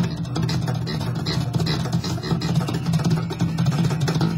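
Electric bass guitar playing a continuous line of low plucked notes with sharp attacks.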